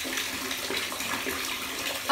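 Bath tap running steadily, a stream of water pouring into a partly filled bathtub.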